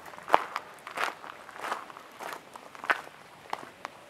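Footsteps crunching on gravel at an easy walking pace, about one and a half steps a second, getting fainter near the end.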